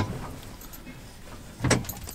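A sharp click at the start and a second brief knock about a second and a half later, with quiet room tone between: handling of a small LED penlight.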